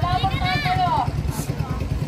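Small engine of a wooden outrigger boat running at idle with an even low throb. Voices call out loudly over it in the first second.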